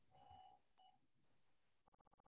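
Near silence, with two faint, short electronic beeps about half a second apart in the first second.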